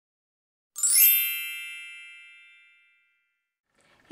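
A single bright chime rings out about three-quarters of a second in, with several high ringing tones that fade away over about two seconds.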